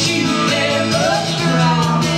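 Two strummed acoustic guitars, with a woman's sung melody gliding up and down over them.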